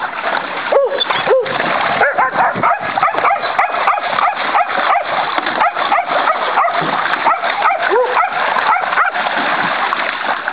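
Water splashing and sloshing in a plastic kiddie pool as dogs play-wrestle and stamp in it, with many short barks and yips throughout. A few lower yelps come about a second in and again around eight seconds.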